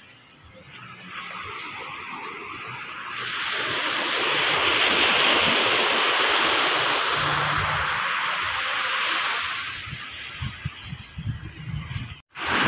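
Sea waves washing onto a beach: the rush of water swells about three seconds in and dies back near ten seconds, with a few soft knocks near the end.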